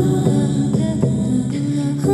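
Live-looped music: several layered wordless female voices humming and holding sustained notes, with a few soft beats on a hand-held frame drum.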